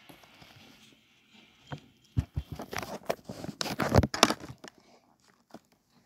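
Rustling and bumping of plush toys and fabric being handled close to the microphone: a quiet start, then a burst of crinkly rustles and soft knocks about halfway in, loudest a little before the end.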